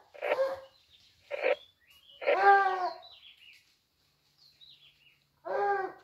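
Hunting dogs barking four times, the third bark long and drawn out, while working the scrub after a wild boar; faint bird chirps in the pauses.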